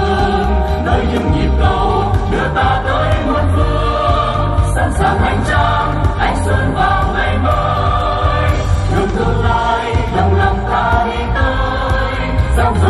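A choir of amplified voices singing a song over loud backing music with heavy bass, played through a stage sound system.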